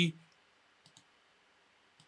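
Two faint computer mouse clicks about a second in, otherwise near silence, after the tail of a spoken word at the very start.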